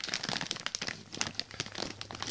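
A thin clear plastic bag crinkling as it is handled, an irregular run of sharp crackles.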